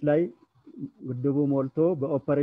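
A man speaking Amharic in drawn-out syllables, with two short pauses in the first second.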